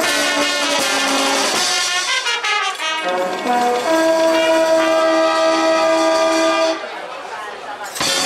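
Brass band of trumpets, trombones and sousaphones playing a chordal passage. About four seconds in the band holds one long chord, which cuts off near seven seconds, after which the playing is quieter.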